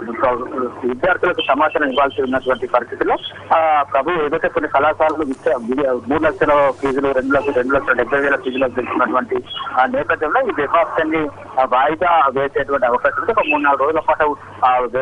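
A man speaking continuously over a telephone line, the voice narrow and thin.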